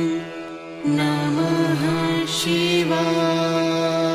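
Devotional mantra chanting over a steady, sustained musical drone. After a brief dip, a chanting voice enters about a second in.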